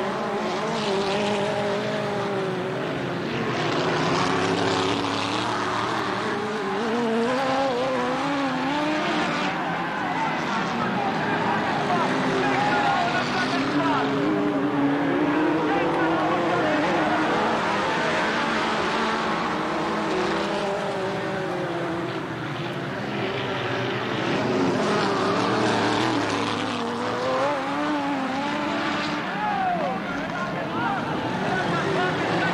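A pack of midget race cars' engines running at racing speed, their pitches rising and falling as the cars go through the turns and down the straights.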